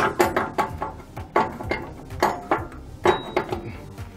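Steel locking pin on a container chassis twist-lock being worked by hand: a string of irregular sharp metallic clinks and knocks as the pin rattles against the lock.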